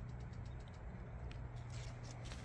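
Quiet outdoor background: a steady low hum under a faint hiss, with a few faint ticks.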